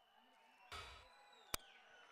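Near silence: faint hall ambience, with a dull thump about two thirds of a second in and a single sharp click about a second and a half in.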